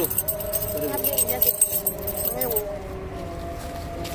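Leaves and stems of a small potted shrub rustling and crackling as it is handled and pulled at, stopping about two and a half seconds in, with faint voices behind.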